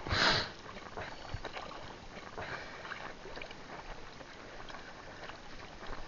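Sea water splashing and lapping as hands work a fishing net at the surface, with one loud splash just after the start that lasts about half a second.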